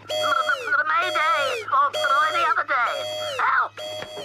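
Cartoon electronic alarm signal: a beep repeating about once a second, each one held and then falling in pitch, with a warbling electronic tone in between. It is an incoming distress call from a rocket in trouble.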